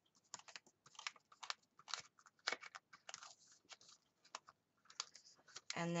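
Paper pages of a disc-bound planner being handled and turned: an irregular string of light rustles and clicks as the sheets move on the binding discs.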